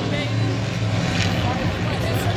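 Engines of a field of oval-track race cars running at speed together, a steady drone.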